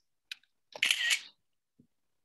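A light click about a quarter second in, then a brief hissing rustle lasting about half a second, and a faint low thud near the end.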